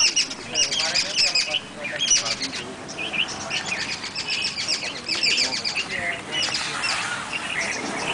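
Several birds chirping busily, with quick runs of high notes overlapping one another throughout.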